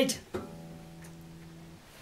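A single acoustic guitar note plucked about a third of a second in, ringing steadily for over a second before it is damped and cut off.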